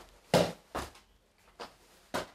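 A footbag being juggled with the inside of a sneaker: three short, sharp hits, the first the loudest, spaced roughly half a second to a second apart.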